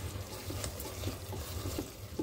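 Thick masala being stirred with a silicone spatula in a stainless steel pot on the stove, a soft wet cooking sound under a low steady hum.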